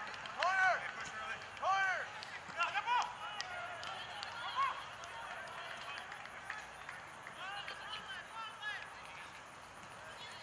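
Distant shouted calls from rugby players: several short, sharp yells in the first five seconds, then fainter calls, with a few light knocks and footfalls in the open air.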